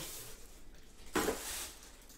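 Quiet handling noise as a foam box insert is lifted off and a football helmet in a clear plastic bag is pulled from its cardboard box, with one brief louder rustle a little after a second in.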